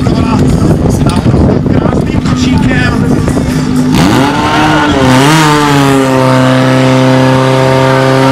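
Portable fire pump engine running steadily under shouting from the team and crowd, then revving up with its pitch swinging about four seconds in and settling into a loud, steady high-speed run as it pumps water into the hose lines.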